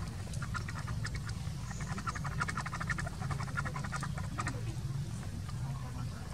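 An animal call: a rapid run of short clicking pulses lasting about four seconds, over a steady low rumble.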